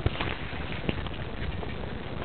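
A few footsteps on gravel, heard as scattered short crunches over a steady rustle on the microphone.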